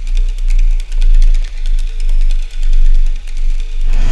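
Dubstep track: deep sub-bass swelling and fading in slow pulses under fast ticking hi-hats and a held mid tone. Right at the end a loud burst of noise begins.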